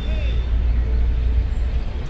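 Steady low rumble of outdoor background noise, with a brief faint voice just after the start.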